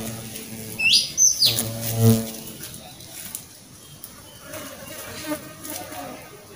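A bird gives two quick rising chirps about a second in, over a low buzzing hum in the first two seconds; after that only faint outdoor sounds remain.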